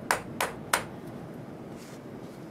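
Plastic test-well strip holder tapped down hard on a paper pad in quick knocks, about three a second, stopping after three taps in the first second. The tapping clears the last wash solution out of the wells.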